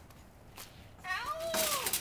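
A toddler's high-pitched squeal about a second in, its pitch rising and then falling, breaking into a loud breathy shriek near the end.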